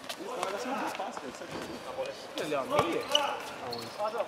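Futsal ball kicked and bouncing on a hard court floor, a series of short knocks, under background chatter of players' voices.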